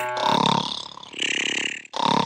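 Cartoon snoring sound effect: a low, burp-like rumble followed by a hissing breath out, cut off sharply just before the end.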